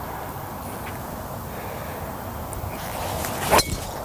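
A golf club strikes a ball off the tee: one sharp crack about three and a half seconds in, over steady background noise.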